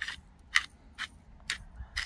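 Seasoning from a small spice jar being worked over a pot: a row of short, sharp clicks, about two a second.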